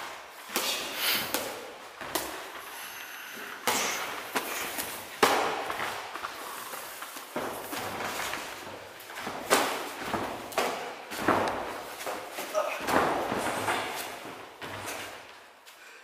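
Gloved punches and kicks landing during kickboxing sparring: a string of sharp thuds and slaps at irregular intervals.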